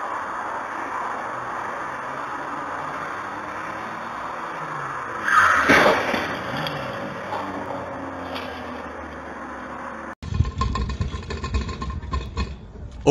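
Steady street traffic noise with a sudden loud car-to-car collision impact about five seconds in, trailing off briefly. Near the end the sound cuts abruptly to a low vehicle rumble.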